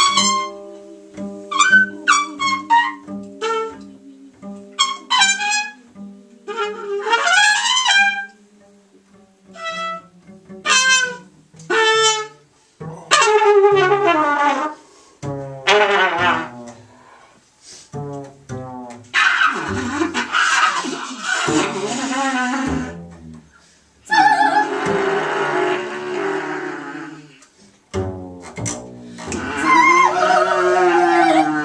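Free improvised music for muted trumpet, double bass and voice, played in short, broken phrases over low held tones, giving way to long breathy, hissing passages in the second half.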